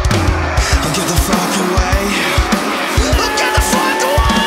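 Heavy metal band playing an instrumental passage that comes in hard right at the start, with distorted guitars over pounding kick drums. From about three seconds in, a lead guitar holds high sustained notes with slight bends.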